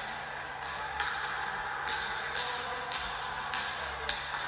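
Basketball being dribbled on a hardwood gym floor, a sharp bounce about once a second, over steady hollow gym room noise.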